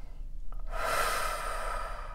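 A woman's long, audible breath, a single swell of breath noise starting a little under a second in and lasting under two seconds.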